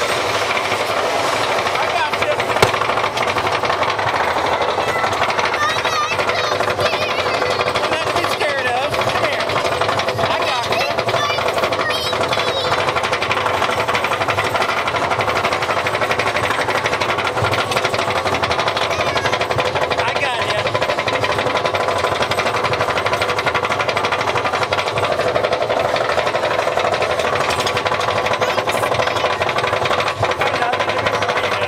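Mine-train roller coaster cars running along the track: a loud, steady rattling clatter of the wheels and cars, with a sharp click about two and a half seconds in. Riders' voices come through the din now and then.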